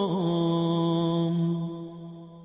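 A man's voice chanting Arabic devotional recitation, drawing out the last syllable of a phrase as one long note. The note wavers briefly at first, is then held on one pitch, and fades away near the end.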